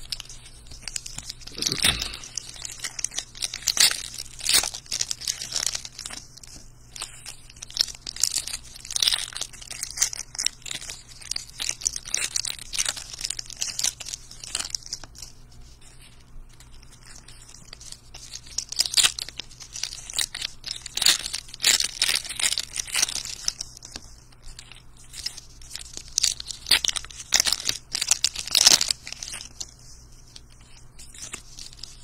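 Trading-card pack wrappers (2022 Diamond Kings) crinkling and being torn open by hand, with cards handled and stacked, in irregular bursts of crackle. A dull knock comes about two seconds in.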